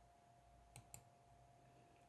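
Near silence: room tone with a faint steady hum and two faint clicks close together just under a second in.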